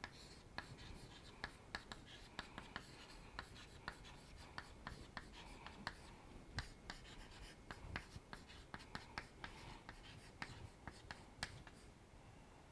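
Chalk writing on a chalkboard: a faint, irregular run of short, sharp taps and scratches, several a second, as each letter stroke is made.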